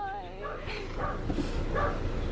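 Tearful voices making short, wavering, high-pitched whimpers and sobs, with no clear words.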